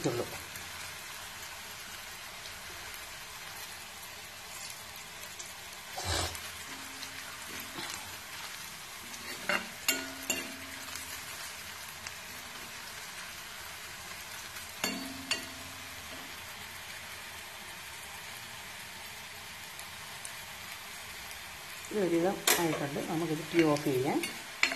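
Oil sizzling steadily as chopped garlic, green chillies and curry leaves fry in an iron kadai. A spoon stirs them, with a few short metal clinks and scrapes against the pan about six, ten and fifteen seconds in.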